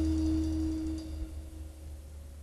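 The final held chord of a jazz track ringing out: steady sustained tones over a low bass note, dying away from about a second in as the piece ends.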